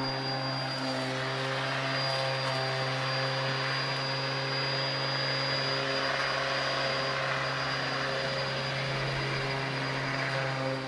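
Ryobi electric rotary lawn mower running, a steady motor hum with the whir of the spinning blade.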